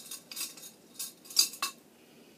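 Metal crochet hooks clinking against each other as they are sorted through in a jar: about five light, sharp clinks, the loudest about one and a half seconds in.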